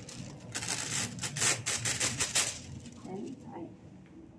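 A thin sheet of metallic laminating foil crinkling and rustling as it is handled, a quick run of crackles for about two seconds that dies down near the end.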